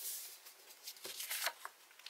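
Faint rustle of a hand sliding over folded sheets of printer paper, pressing the crease flat, with a few short paper crinkles about a second in as the sheet is handled.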